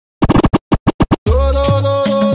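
Track playing from DJ software opens with a run of short, chopped stutter bursts, cut to silence between each. About a second in, the music drops in fully with a steady bass line and sustained tones.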